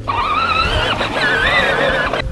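Battery-powered ride-on toy tractor driving, its electric motor and gearbox whining over a low hum; the whine wavers and steps up in pitch about halfway through.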